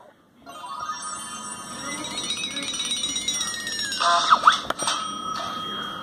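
A bell-like jingle of many high chiming tones, swelling over a few seconds and ending in a falling glide about four seconds in. A short voice says "bye" and laughs near the end.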